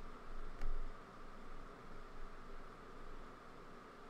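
Steady low hiss of microphone and room background noise with a faint high hum, and a single soft click just over half a second in.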